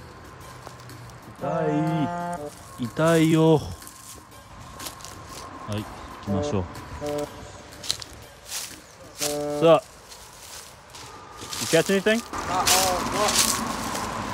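Two men's voices calling back and forth. Between the calls come footsteps and the brushing of dry grass and bramble stems, which grow denser near the end.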